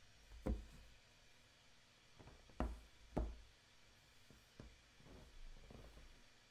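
A few short knocks on a hard surface against quiet room tone. The loudest comes about half a second in, then two close together around the middle, with fainter taps between and after.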